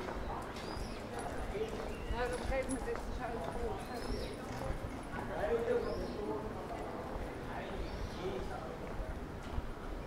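Street ambience: people talking nearby and footsteps clicking on brick paving.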